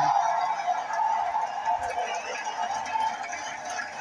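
A large crowd cheering and applauding, heard through a television's speaker; the noise fades a little toward the end.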